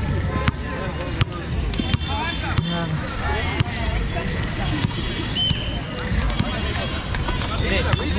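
Players and onlookers talking and calling over one another, with a low rumble and scattered sharp knocks of the rollball bouncing on the concrete court.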